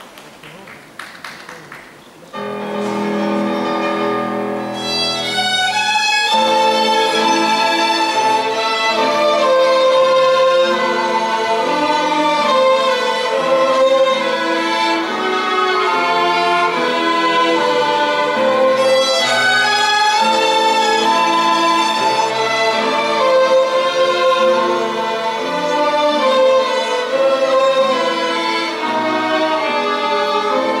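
A violin ensemble with piano accompaniment playing a csárdás, entering about two seconds in with slow, low sustained phrases, then climbing higher and growing louder from about six seconds on.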